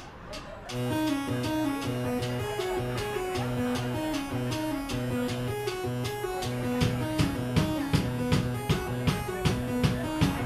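Live rock band starting a song: guitars and bass play a repeating riff from about a second in, and the drum kit comes in near the seven-second mark.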